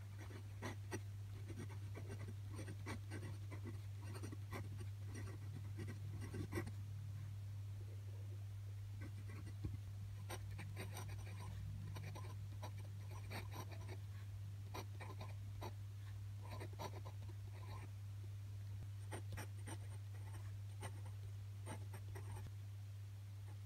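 Glass dip pen nib scratching across grid paper in short strokes as words are written in ink, with a break of about two seconds about seven seconds in. A steady low hum runs underneath.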